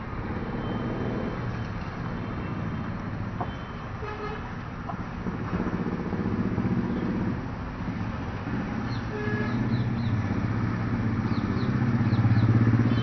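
Road traffic: motor vehicle engines running steadily, with a few short horn toots.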